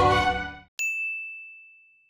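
Cartoon music dies away, then a single high, bell-like ding sound effect sounds once and rings down to silence over about a second and a half.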